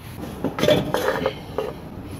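Aluminium front engine cover of a BMW R75/6 airhead being pulled off, with a second or so of metal clinks and scrapes starting about half a second in.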